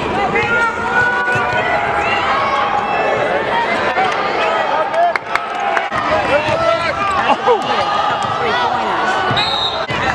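A basketball being dribbled on a hardwood court, with sneakers squeaking under running players and crowd voices calling throughout.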